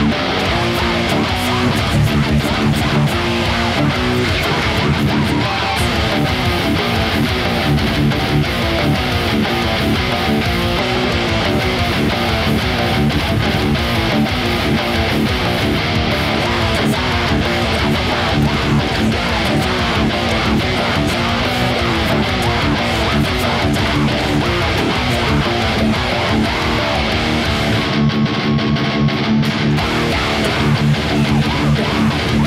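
Electric guitar playing the riffs of a hardcore song without a break.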